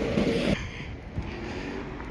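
Steady outdoor background noise over a railway yard and city, a little louder in the first half second, with no distinct event standing out.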